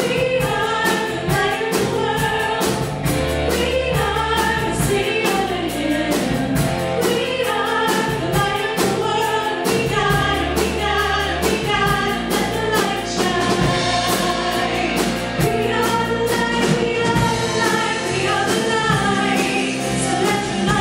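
Live contemporary worship band: several singers in harmony over a drum kit keeping a steady beat, with the congregation singing along.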